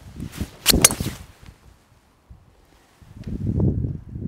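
A golf driver swishing through the downswing and striking a teed ball with a sharp crack, about three-quarters of a second in, the ball struck slightly off the toe. Near the end, a low rumble of wind on the microphone.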